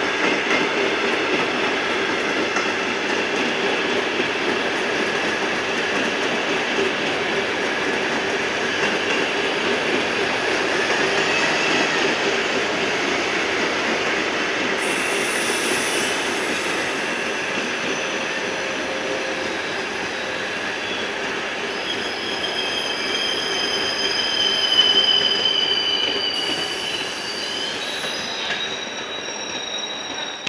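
ÖBB Nightjet night-train coaches rolling past on the rails with a steady rumble of wheels. Near the end, for several seconds as the last coaches go by, the wheels squeal in high, wavering tones.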